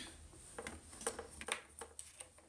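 Faint clicks and taps of controls on a music mixing controller as it is worked between songs, about five of them scattered over two seconds. A song's last note dies away at the very start.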